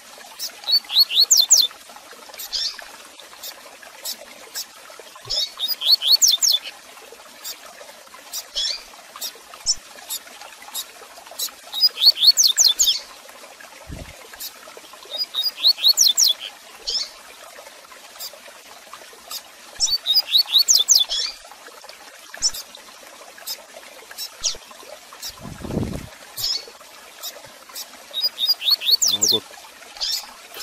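Male double-collared seedeater (coleiro) singing its 'tui tui zel zel' song. Phrases of about a second of quick, falling, high notes come every four to six seconds, with single sharp chip calls between them. A dull low thump sounds about 26 seconds in.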